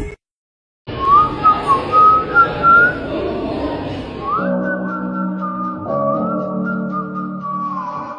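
A whistled tune of a few quick notes, then a held, slightly wavering high tone over a low sustained chord: an edit's music track. It starts after a brief gap of silence.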